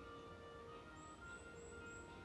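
Faint recorded hymn music played back at a graveside, slow held notes changing about once a second, before the mourners start singing.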